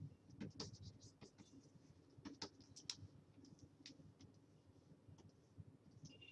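Near silence with faint, irregular clicks and taps of a computer keyboard, over a faint low hum.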